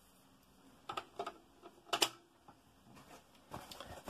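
A few scattered light clicks and taps from small items being handled on a desk, the loudest about two seconds in, over faint room tone.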